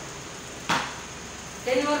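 Wooden cricket bat striking a ball hung on a rope: one sharp knock with a short echo, part of a steady run of hits about a second and a half apart.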